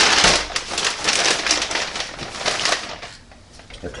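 Plastic bag of frozen breaded chicken pieces crinkling and rustling as a gloved hand rummages in it. It is loudest in the first second, then comes in shorter rustles and goes quieter about three seconds in.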